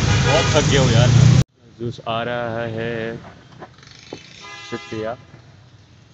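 Loud, busy street noise with voices for the first second and a half, then, after a sudden cut, vehicle horns in traffic: one held honk of about a second about two seconds in, and a shorter honk near the end.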